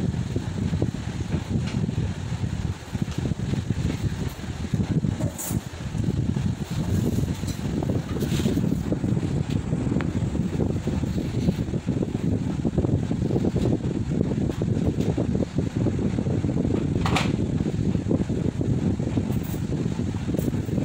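Steady low fan noise, a rushing hum with no change in pitch, with a couple of brief light clicks about five and seventeen seconds in.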